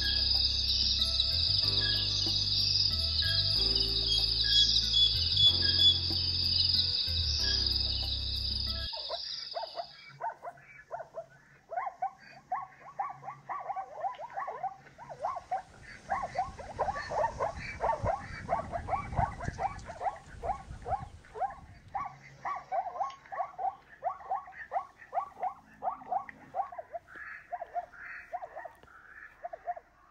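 Background music for about the first nine seconds, then zebras barking: a long run of short, repeated calls, several a second, continuing to the end.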